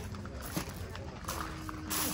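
Quiet background of faint distant voices, with a faint held tone coming in a little after halfway.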